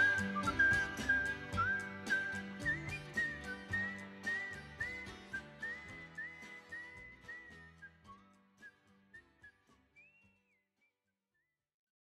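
The song's outro: a whistled melody with small slides in pitch over drums and bass, fading out gradually until it is gone about ten seconds in.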